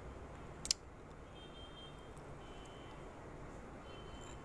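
Quiet room hiss with a single sharp click less than a second in, followed by three faint, high, thin steady tones.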